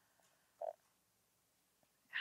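Near silence: room tone, with one brief faint sound a little over half a second in.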